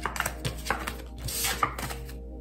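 Tarot cards being handled on a table: a run of sharp taps and flicks as cards are drawn from the deck and set down, with a brief brushing sound and the sharpest tap near the end.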